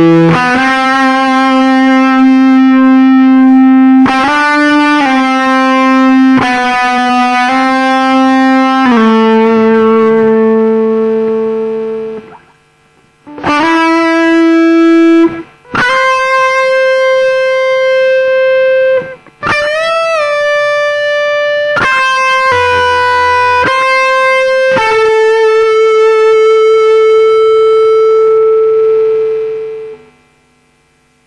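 Distorted Les Paul-style electric guitar playing a slow lead solo in A minor: long sustained single notes with string bends and vibrato, broken by a few short pauses, ending on a long held note that cuts off at the end.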